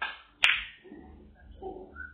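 Snooker cue striking the cue ball, followed about half a second later by one sharp, loud clack of the balls colliding.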